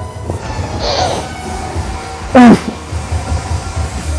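A man's loud, short groan of effort, falling in pitch, about two and a half seconds in, as he strains through a rep of lying hamstring curls. Underneath runs background music with a low pulsing beat.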